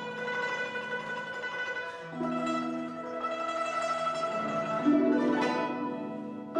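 Yangqin (Chinese hammered dulcimer) and guzheng playing a slow Chinese folk melody together in long, trembling tremolo notes. The notes move to new pitches about two seconds in and again twice just before the five-second mark.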